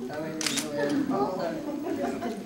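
Camera shutter clicking once or twice about half a second in, over indistinct voices in the room.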